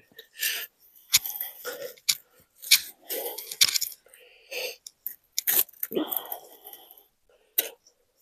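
Plastic mesh tree guard being cut with a blade and pressed around a young tree trunk: irregular crunching and scraping with a few sharp clicks.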